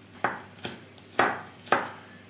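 Kitchen knife chopping garlic cloves on a wooden cutting board: four knife strikes, unevenly spaced, the last two the loudest.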